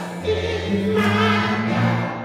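Church choir singing a gospel song in several voices, holding long notes.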